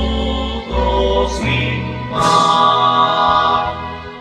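Choir singing slow, sustained chords that change about every second.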